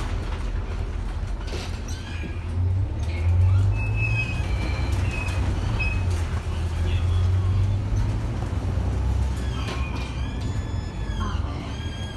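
Interior of a moving city bus: the engine and drivetrain give a steady low rumble that swells in the middle. A few higher-pitched squeals come near the end.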